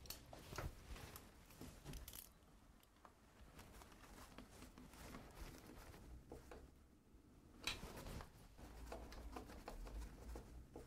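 Faint handling noise: a few light clicks and rustles of small parts being worked by hand, with a slightly louder cluster about eight seconds in, over quiet room tone.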